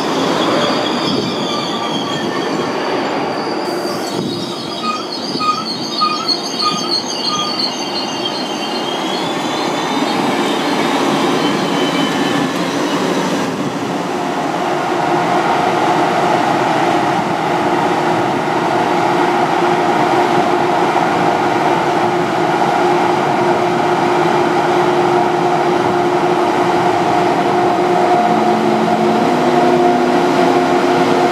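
ICE 2 (DB Class 402) train moving slowly along the platform. High squealing from the wheels comes through the first ten seconds or so. From about a quarter of the way in, the steady hum of the power car grows louder as it comes alongside.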